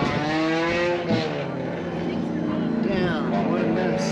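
Car engines running: one engine note rises and falls in pitch in the first second, a steady engine tone holds from about a second and a half on, and another engine climbs quickly in pitch about three seconds in.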